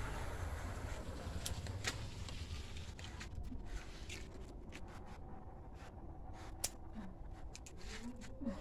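Scissors snipping bitter gourd stems: a few sharp clicks, the loudest about two-thirds of the way in, amid rustling of leaves and vines and handling noise over a low rumble.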